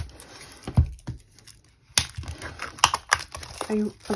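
Fingernails picking and tapping at the clear plastic shrink-wrap on a CD album, giving a handful of sharp clicks with light plastic rustling between them.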